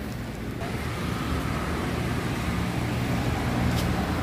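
A motor vehicle engine running close by over street traffic noise: a steady low rumble that grows a little louder in the second half, with a short high tick near the end.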